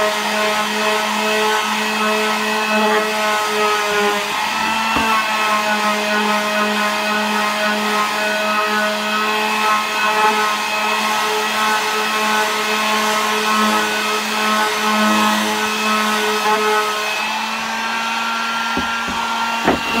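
Corded electric palm sander running steadily while sanding a wooden canvas frame: a constant, even-pitched motor whine over the scratch of the pad on the wood, with a couple of short knocks near the end.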